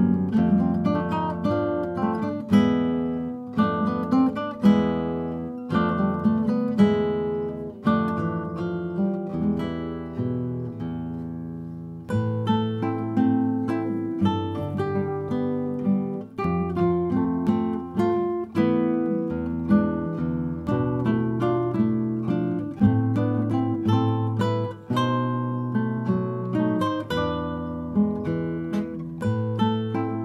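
A duo of classical guitars playing a plucked melody over bass notes. Around ten seconds in the notes die away, and the playing resumes with a fresh, stronger bass line about two seconds later.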